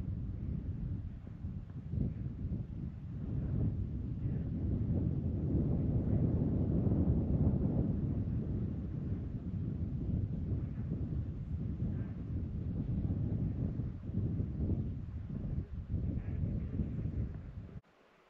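Wind blowing across the microphone, a low rumbling noise that rises and falls in gusts and cuts off suddenly near the end.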